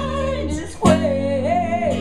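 Live band music: strummed acoustic guitar and electric bass under a man's voice singing long, wavering notes, with a sharp strummed accent a little before halfway.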